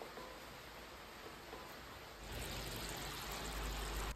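Faint steady hiss of potato curry (alu dum) gravy simmering in the pan, a little louder from about halfway.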